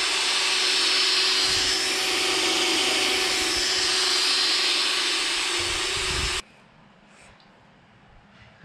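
Cordless drill running steadily as it bores a pilot hole into a broken exhaust manifold stud, ready for an easy out to extract it. It stops abruptly about six seconds in.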